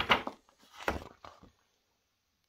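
A paper accessory leaflet rustling as it is handled and unfolded, in several short rustles that stop about a second and a half in.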